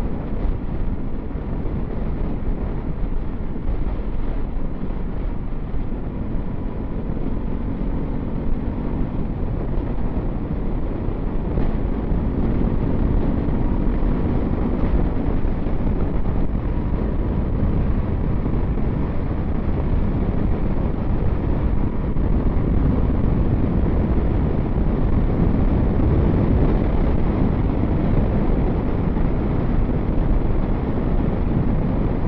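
Heavy wind noise buffeting the microphone of a motorcycle cruising at steady speed, with the bike's engine hum showing faintly through it at times.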